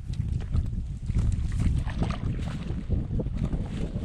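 Wind buffeting an action camera's microphone: an uneven low rumble, with scattered short crackles over it.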